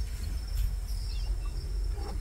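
Insects calling in a steady, high, thin buzz over a low background rumble.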